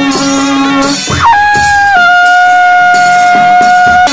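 Nepali panche baja band playing: a wind melody over drum and cymbal strokes for about a second, then the percussion drops out and one wind instrument holds a long loud note to the end, dipping slightly in pitch about two seconds in.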